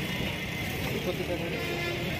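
Crowd chatter: many voices talking over one another as a group walks together, over steady street noise.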